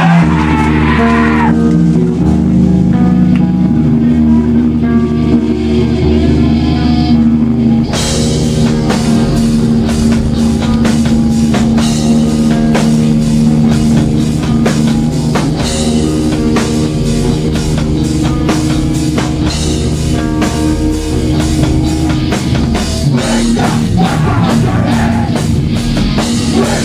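Hardcore punk band playing live: distorted electric guitars and bass hold ringing chords for the first eight seconds or so, then the drums crash in and the full band drives on at a fast, even beat.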